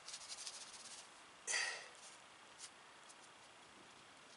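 Faint scratching and rustling of fingers drawing furrows in loose garden soil, with one brief louder swish about a second and a half in and a small tick a second later.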